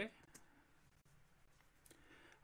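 Near silence: quiet room tone, with one faint click from the computer about a third of a second in.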